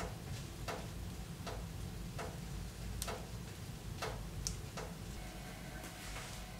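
Wood fire crackling in a stove: sharp pops about every second over a low steady rumble.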